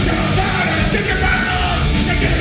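Punk rock band playing live at full volume, with shouted vocals into the microphone over electric guitar.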